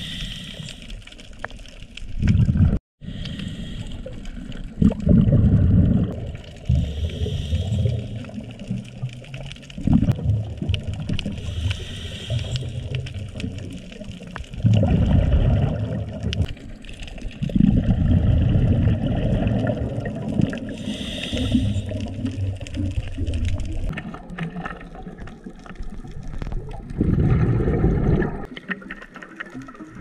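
Scuba diver's regulator breathing, picked up underwater by a housed action camera: bursts of exhaled bubbles gurgle past about every two to three seconds, with fainter hissing inhalations between them.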